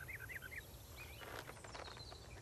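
Faint bird-like chirping: a handful of quick, short chirps at the start, then a few soft ticks over low steady background hiss.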